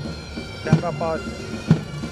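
Military pipe band music: bagpipes sounding a steady drone and melody over a bass drum beating about once a second.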